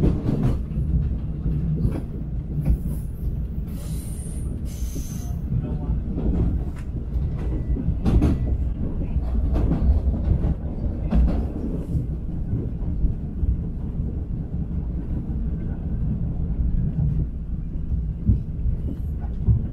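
Interior of a moving LIRR electric commuter train car: a steady low rumble of the running train with irregular knocks from the wheels over rail joints. Two brief high hisses come about three to five seconds in.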